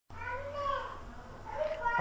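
A high-pitched voice making two drawn-out sounds, the second shortly before the end.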